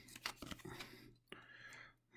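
Trading cards being handled: faint sliding and a few light flicks as cards are moved from one hand to the other.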